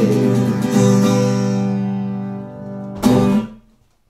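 Acoustic guitar playing the closing chord of a song: the chord rings and fades, with a fresh strum under a second in. One last sharp strum comes about three seconds in and cuts off suddenly.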